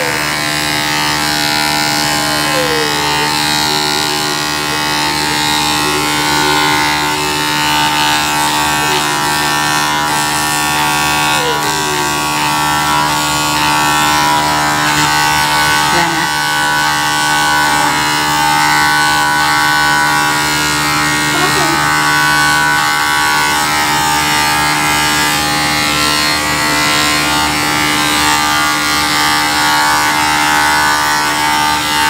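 Corded electric hair clippers buzzing steadily while cutting hair, a continuous hum made of several steady tones.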